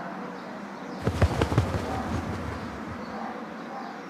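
A quick burst of sharp knocks and thuds about a second in, lasting about a second, over a steady low background hiss.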